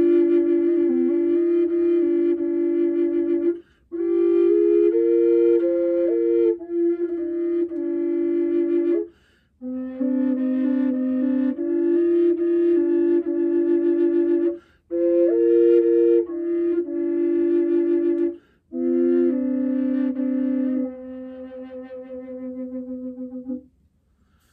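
Contrabass Native American-style double drone flute of aromatic cedar, played in low C with the cork removed: a sustained drone note sounds under a slow melody line. With the pinky down, the drone sits on what the player thinks is the fourth of the scale. Five long phrases break off for breaths, and the last held notes are softer.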